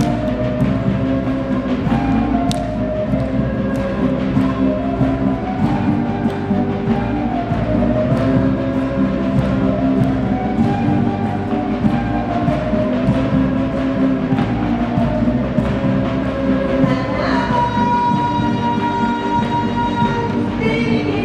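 Live traditional Bolivian folk music for the Atiku dance, played by a band: a melody over steady drum beats. A long, held high note comes in near the end.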